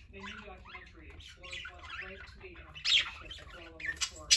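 A flock of pet budgerigars chirping and chattering, with a loud, sharp squawk about three seconds in.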